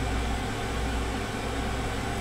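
Steady low hum with an even hiss, the background noise of a recorded podcast playing back after it is un-paused.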